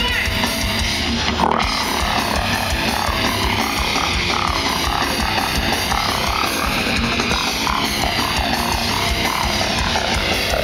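Grindcore band playing live through a festival PA, heard from inside the crowd: distorted guitars and drums in a loud, steady wall of sound. A brief thump rises above it about a second and a half in.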